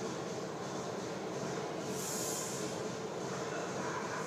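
Steady background noise of a large gym hall, with a brief hiss about two seconds in.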